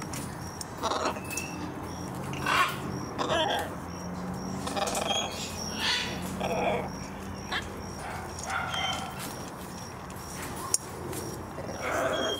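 Macaws giving short squawks and calls at scattered intervals, each under a second long.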